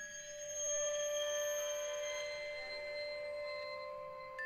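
Contemporary chamber music for piccolo, toy piano, strings and percussion: several quiet, long-held high tones sound together and ring steadily, a soft sustained texture.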